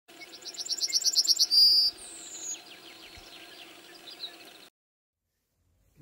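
Yellowhammer singing: a quick run of about ten repeated high notes growing louder, ending in a drawn-out note and a falling whistle, with fainter chirps after. The sound cuts off abruptly near the end.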